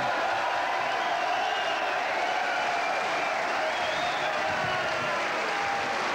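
Boxing-arena crowd cheering and applauding a knockout, a steady wash of noise with scattered shouting voices in it.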